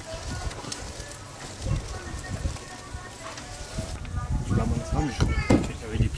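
Indistinct voices of people talking in the background, growing louder about two-thirds of the way through, over faint outdoor ambience with a few light clicks.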